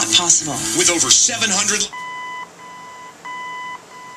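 The rebuilt 1948 Cadillac radio beeping from its speaker: four steady half-second beeps in a row, alternating louder and softer, the tone the radio gives while in its fader-adjusting mode.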